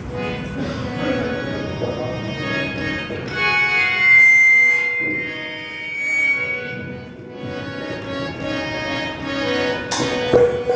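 Harmonium playing a slow melodic passage in sustained reed tones, with one high note held for about three seconds around the middle.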